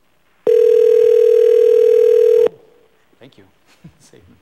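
Telephone ringback tone on an outgoing call: one loud, steady ring lasting about two seconds. The call is ringing and not yet answered.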